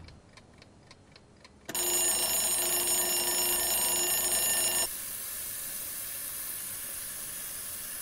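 A clock ticking faintly, then an alarm clock ringing loudly for about three seconds before it stops abruptly. A steady hiss of water running from a tap follows.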